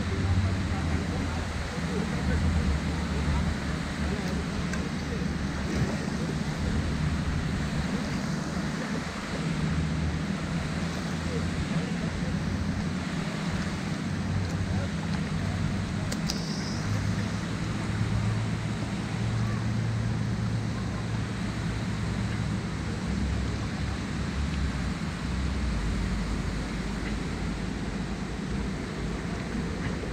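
Steady low wind rumble on the microphone, with water sounds from a kayak being paddled across a lake.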